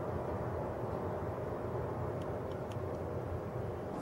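Steady low outdoor background rumble, with a few faint ticks about halfway through.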